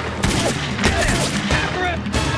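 Gunfire in an animated action scene: several guns firing many quick, overlapping shots.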